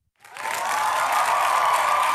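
Recorded applause and cheering sound effect, starting about a quarter second in and swelling to a steady level.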